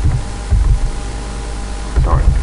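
Steady hiss and low rumble of a noisy voice-recording microphone, with a faint steady hum; the rumble swells briefly about half a second in.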